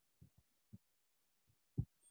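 A few faint, irregular low thumps, the loudest near the end.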